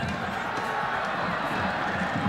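Steady crowd noise in a football stadium, an even din with no single event standing out.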